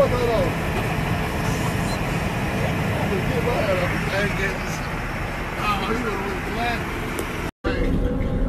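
Steady low rumble of background noise with faint voices talking under it; the sound cuts out for a moment near the end.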